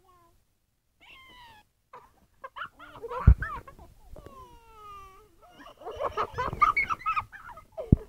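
A child's wordless high-pitched vocal noises: squeals and drawn-out falling cries, busier near the end. There is a sharp knock about three seconds in, and another as it ends.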